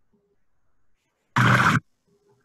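A short, loud splash of trout breaking the water surface to take food, about half a second long and cut off abruptly.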